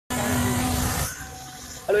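A motor vehicle running close by for about the first second, a steady hum under a noisy rush, then dropping away to quiet outdoor background.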